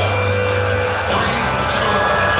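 Background music playing at a steady level.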